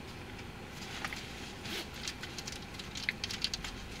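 Light, irregular clicks and rustles of something being handled at close range, over a steady low background hum inside a car.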